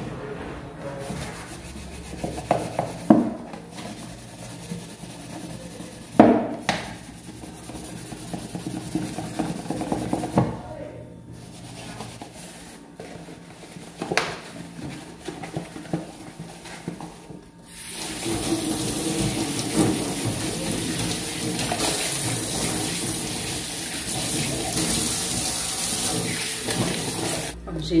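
A plastic margarine tub being scrubbed and handled in a stainless steel kitchen sink, with several sharp knocks as it bumps against the sink. About two-thirds of the way in, a tap starts running steadily as the tub is rinsed, and it stops just before the end.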